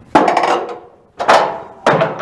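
A 5-inch shell being handled into a steel shipboard ammunition hoist: three loud metallic clanks, the last two closer together, each ringing briefly.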